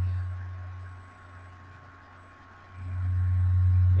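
Steady low electrical hum in the recording, sinking away about half a second in and swelling back up shortly before the end.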